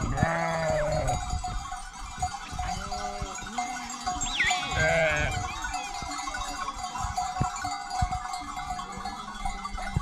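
A flock of sheep on the move, several animals bleating, loudest in the first second and again about five seconds in, over a steady jingle of the flock's bells.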